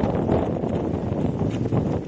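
Wind buffeting the phone's microphone in a steady, rough rush.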